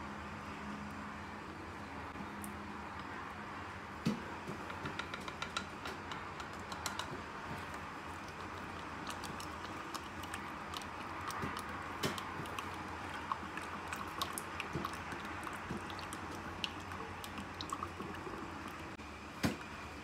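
Wooden stir stick tapping and scraping against a glass beaker as kojic dipalmitate powder is stirred into warm oil to dissolve it: a scatter of light, irregular clicks over a steady low hum.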